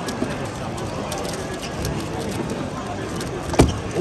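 Background crowd chatter with scattered light clicks from a 3x3 speedcube being turned. About three and a half seconds in comes one sharp slap as the solve ends: the cube is put down and the timer stopped.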